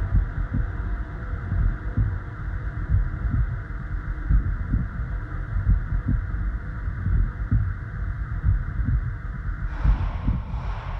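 Science-fiction sound-effect bed: low, uneven throbbing pulses, about two a second, like a heartbeat, over a steady rushing hum. The hum cuts off suddenly just before the end.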